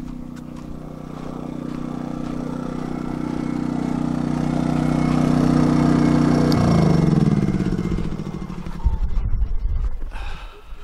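Portable generator engine running steadily, growing louder as it is approached, then switched off about six and a half seconds in, its pitch falling as the engine winds down to a stop. A few thumps follow near the end.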